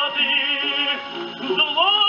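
A tenor singing an opera air with orchestra, played from a 1937 shellac 78 rpm record on a portable wind-up gramophone: held notes with a wide vibrato, a short dip near the middle, then a new long note coming in near the end, with the dull, narrow sound of an old disc.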